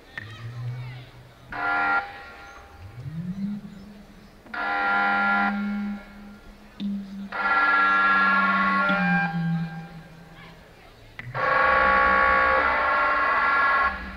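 Live experimental electronic music from synthesizers: dense, pitched blocks of sound that start and stop abruptly four times. A low drone slides up about three seconds in and holds beneath them.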